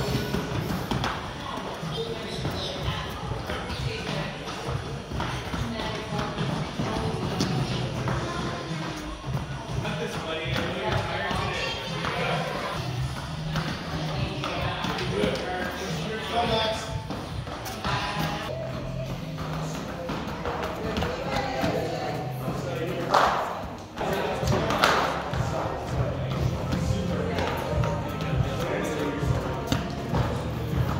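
Music with a steady bass line plays throughout, over children's voices and the thud of feet on the floor mats as they run the ladders. Two louder, sharper sounds stand out a little past two-thirds of the way through.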